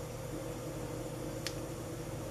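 Steady background hum and hiss of a quiet room, with one faint click about one and a half seconds in.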